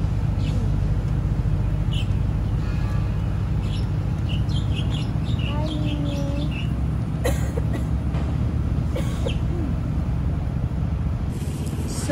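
Steady low mechanical hum, with birds chirping at intervals and a brief chicken-like cluck near the middle. A few sharp clicks of handling about halfway through.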